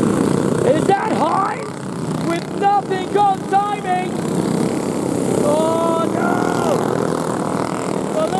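Racing kart engines running steadily as a pack of karts passes on a dirt track, with a commentator's voice over them.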